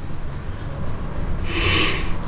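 One rushing breath about one and a half seconds in as a man gives a mouth-to-mouth rescue breath into a CPR training manikin, over a steady low hum.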